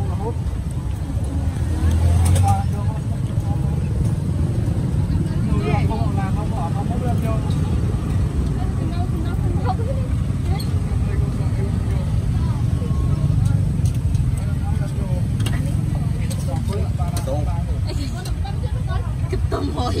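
Street market ambience: a steady low rumble, like passing traffic, under scattered chatter of people nearby.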